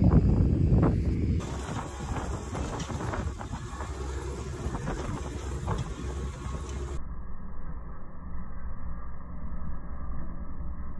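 Steady low rumble of a tine seeder being pulled through wet soil, with rattles and knocks from the tines and press wheels. The first second or so holds louder bumps, and about seven seconds in the sound turns duller.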